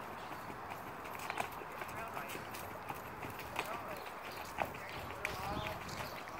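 Hoofbeats of a Tennessee Walking Horse on a dirt track as the mare is ridden at a gait, with a few sharper hoof strikes standing out.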